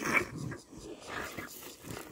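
Rhino calf sucking milk from a feeding bottle, making irregular slurping sounds.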